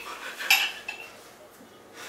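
Fork clinking against a dinner plate: one sharp clink about half a second in, then a lighter one soon after.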